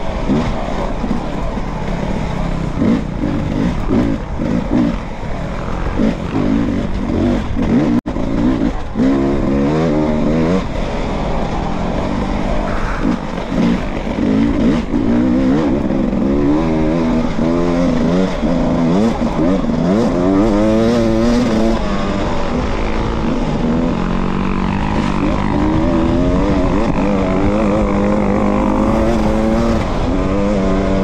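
Dirt bike engine heard from on the bike, revving up and down repeatedly as the rider works the throttle and shifts through a twisty trail, then holding a steadier pitch near the end on an open straight.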